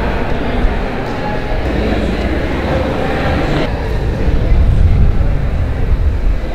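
A steady low rumble under indistinct voices, swelling louder a little past halfway.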